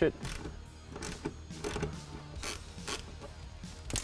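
Ratchet and 10 mm socket loosening a ground bolt, the ratchet's pawl clicking in scattered short runs with pauses between.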